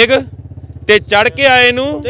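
A steady idling engine hum with rapid even pulsing, running under a man's voice.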